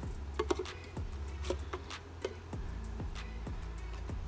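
Steady low hum of Italian honeybees, with a few sharp clicks and light knocks as the tin-can syrup feeder is set down on the wooden package box.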